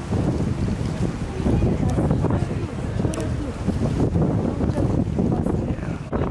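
Wind buffeting the camera microphone, heard as a steady, uneven low rumble, with faint voices under it.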